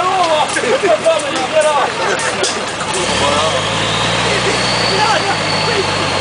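Off-road 4x4's engine running. About three seconds in, its low note rises a little and then holds steady, with voices over the first half.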